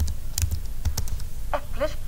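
A few separate sharp clicks of computer input as on-screen word tiles are selected.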